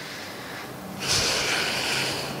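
A woman's long, audible breath through the nose, starting about a second in and lasting about a second. She is upset and about to answer.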